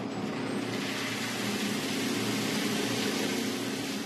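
Cacao bean drum roaster running with a steady motor hum, under the continuous rushing rattle of roasted cacao beans pouring out into the stirred cooling tray, growing slightly louder.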